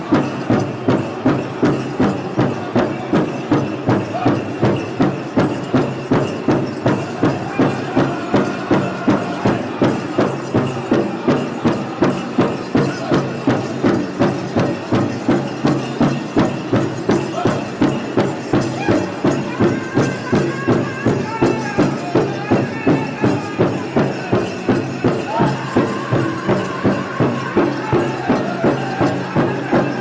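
Powwow drum group playing a steady, even drumbeat of about two strikes a second for the dancers. High singing voices rise over the drum in the second half.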